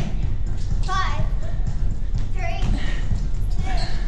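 Short, indistinct voice fragments over a steady low rumble.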